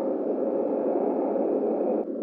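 Dark ambient drone soundscape: a steady, mid-low droning hum with a faint high tone held above it.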